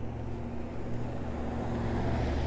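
A car driving along the street, a steady low engine hum with tyre noise that grows slowly louder as it approaches.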